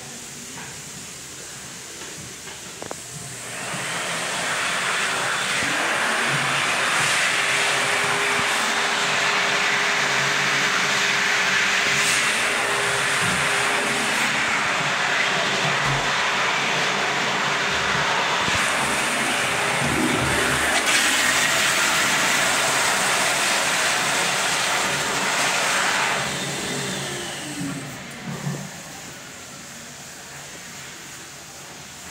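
Commercial toilet's exposed chrome flushometer valve flushing: a loud rush of water builds about three seconds in, runs steadily for some twenty seconds, then tapers off with falling tones as the valve shuts.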